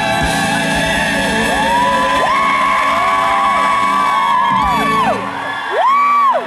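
Live band playing an upbeat show tune, with audience members whooping over it in several overlapping calls. The music thins out near the end, and then comes one loud whoop.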